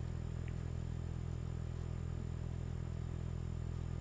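Steady low hum with no distinct events.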